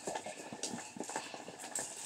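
Hands squishing and kneading fluffy shaving-cream slime, making a string of small irregular clicks and pops.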